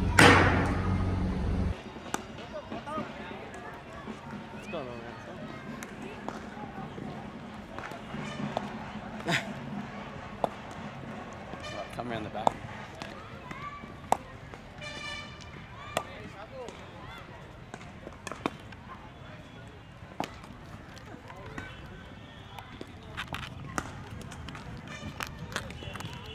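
Cricket net-practice ambience: background voices of many players, with sharp cracks of cricket balls being struck every couple of seconds. It opens with one louder, closer hit that gives way to the more distant outdoor sound about two seconds in.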